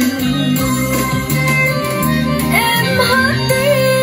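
A recorded song playing through a Shuboss S350 trolley karaoke speaker during a music playback test. A melody line that bends in pitch comes in about two and a half seconds in.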